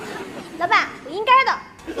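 Two short, high-pitched voice-like cries, each sliding up and down in pitch. The second, about a second in, is the louder.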